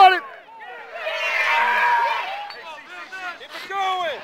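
Sideline spectators shouting and cheering together, loudest from about one to two and a half seconds in, with a few scattered single shouts before and after.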